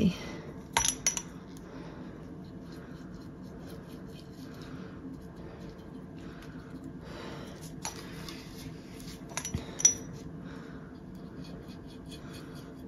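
A paintbrush working dye onto cotton floss wrapped around a glass jar, with a few light clinks against the glass about a second in and again near the end, over a faint steady hum.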